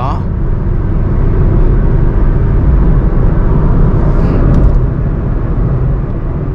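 Inside the cabin of a Honda City with an i-VTEC petrol engine at highway speed: a steady low engine and road rumble. It grows louder over the first couple of seconds and eases again about five seconds in.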